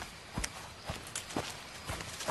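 Footsteps of a person moving through a bamboo grove: irregular steps, roughly two a second.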